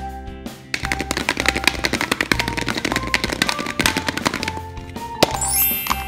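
Cheerful background music. A fast rattling run of clicks plays over it for about four seconds from just under a second in. Near the end comes a sharp click and a rising sweep.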